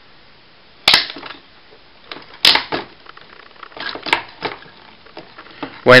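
Hard plastic parts of a Deluxe Dino Charge Megazord toy clicking and knocking as its arm pieces are handled and repositioned. There are a few separate sharp clicks, the loudest about two and a half seconds in.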